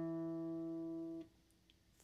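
A single E note on a Fender Stratocaster electric guitar, fretted at the 2nd fret of the D string, ringing steadily and then damped about a second and a quarter in.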